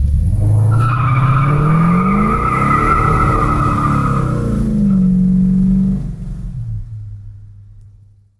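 A car accelerating hard with its tires squealing: the engine note climbs in pitch and the squeal runs for the first few seconds. The sound then fades away over the last two seconds.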